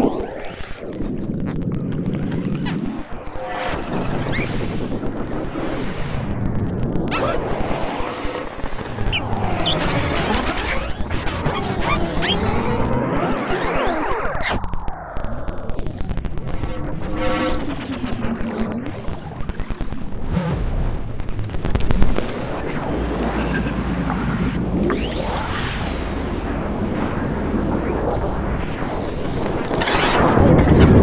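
Postcard Weevil, a small handheld synth circuit board, played by turning its knobs: buzzy, noisy tones with sweeping pitch glides and stuttering pulses over a low rumble. A sharp, loud burst comes about 22 seconds in.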